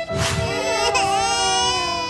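A quick whoosh, then a long, high wailing cry like a crying child, sliding gently down in pitch, over background music.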